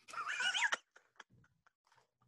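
A high-pitched, wavering burst of laughter lasting under a second, followed by a few faint clicks.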